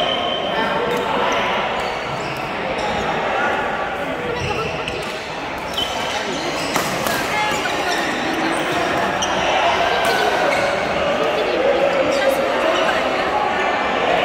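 Badminton rackets striking shuttlecocks in sharp, scattered hits from several courts, over a steady background of indistinct voices, echoing in a large hall.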